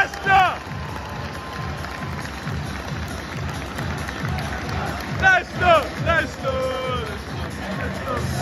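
Stadium public-address music with a steady beat, playing over crowd noise in a football ground. A few voices shout or sing close by about five seconds in.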